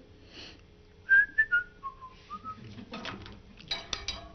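A person whistling a short tune of about six quick notes that wander up and down, followed near the end by brief rustling and knocks.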